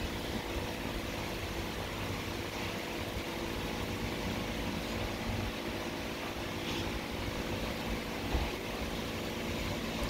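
A steady mechanical hum with several constant tones, even in level and pitch throughout.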